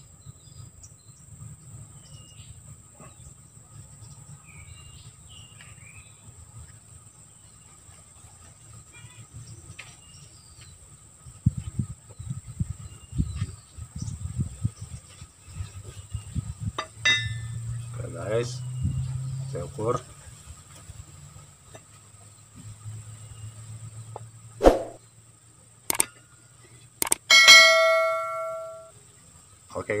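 Scattered knocks and scrapes as a hand-forged steel parang (machete) blade is handled against wood, with a sharp knock about three-quarters of the way through. Then the blade rings with a clear metallic tone for about a second and a half.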